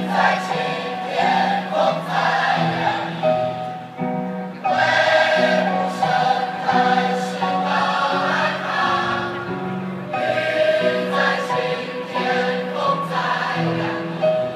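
A large chorus of young men and women singing a song together, in sung phrases with brief pauses between them.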